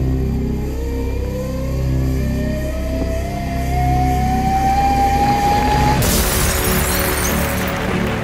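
Ceremonial music building under a rising tone for about six seconds, then a sudden loud burst of noise: the ceremonial champagne bottle smashing against the ship, with crowd noise under falling confetti.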